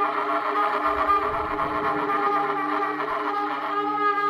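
Improvised electronic jazz: layered, sustained horn tones from tenor saxophone and trumpet with electronics, holding steady pitches. A low rumbling swell comes in about a second in and fades away.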